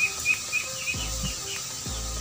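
A small bird chirping in a quick series of short, high notes, about four or five a second, trailing off after about a second and a half.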